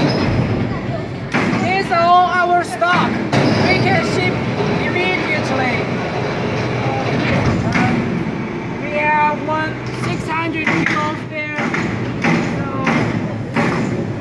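People talking in short stretches over a steady factory background noise.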